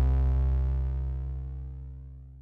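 Background music ending on a deep, held bass note with overtones, fading out steadily.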